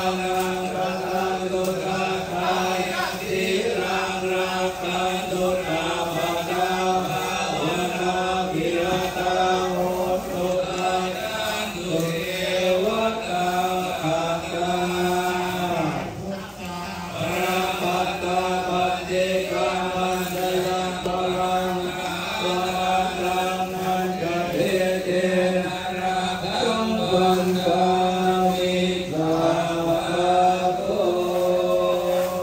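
Thai Buddhist monks chanting in unison, a continuous recitation held on a few steady pitches, with a short break about halfway through.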